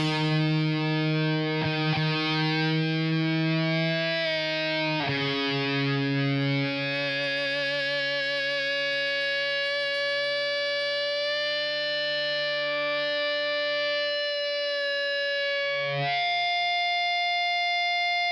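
Heavily distorted electric guitar holding long, sustained notes with no drums. The held pitch shifts a few times, with a slight waver in the middle.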